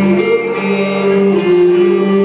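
Live band playing amplified guitars and drums, with held guitar notes and a sharp drum accent about every second and a quarter.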